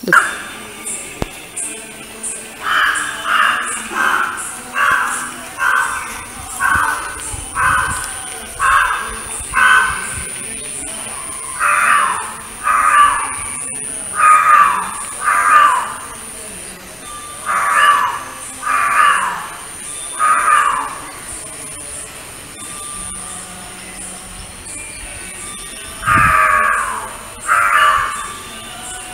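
Crows cawing in repeated series of harsh calls, roughly one a second: a run of about eight, then shorter runs of five, four and two. A steady high whine runs behind them.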